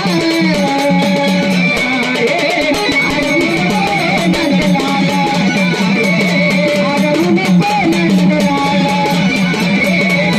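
Live Marathi gavlan folk music with no singing: a bright, wavering melody line over a steady hand-drum rhythm, at an even level.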